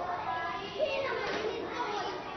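A roomful of young children chattering at once, many overlapping voices with no single speaker standing out.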